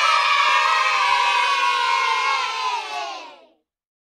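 A group of children cheering together in one long shout, their voices sliding slowly down in pitch, fading out after about three and a half seconds.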